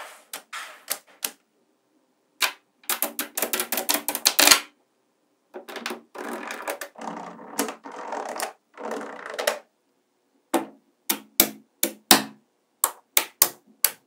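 Small magnetic balls clicking and snapping together as strips of them are joined into a flat plate and stacked into columns. Quick runs of clicks and a rattling patter come first, then separate sharp snaps in the last few seconds.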